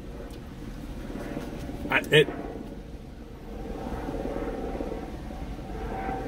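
Steady low rumble and hum inside a parked car's cabin, with a faint higher hum joining about halfway through.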